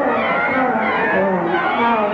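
A cartoon voice making wordless, wavering vocal sounds, its pitch sliding up and down, on an old film soundtrack with a muffled top end.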